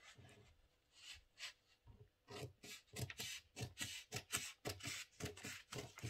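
Scissors cutting through pattern paper: a faint run of short snips, sparse at first, then coming about three a second from about two seconds in.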